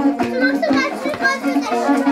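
Children's high voices shouting and calling out as they play a running game, over music with a repeating plucked-string melody.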